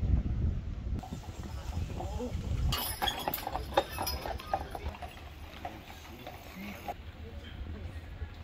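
Horse hooves clip-clopping on a paved street as a horse-drawn wagon passes, the clops thickest from about three seconds in until about seven seconds. Voices of people in the street are heard, and a low rumble comes at the start.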